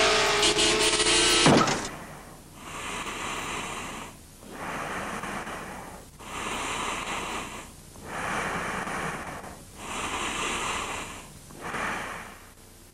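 Car tyres screeching, ending in a sharp crash about one and a half seconds in. It is followed by slow, regular breathing-like swells of noise, about one every second and a half to two seconds, six in all.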